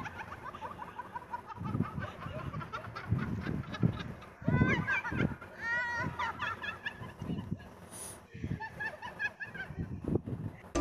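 Shrill, squawking voices with a fast wavering pitch, in repeated short bursts, loudest about halfway through.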